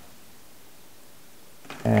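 Quiet room tone, a faint steady hiss with no distinct handling sounds. A man's voice starts near the end.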